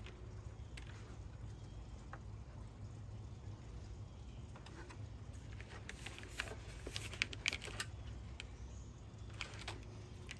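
Faint scattered clicks and light taps as air-conditioning hoses and line fittings are handled, coming thicker in the second half, over a low steady hum.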